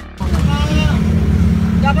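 Passenger jeepney running, a steady low engine and road rumble heard from inside the cabin, cutting in sharply just after the start, with voices over it.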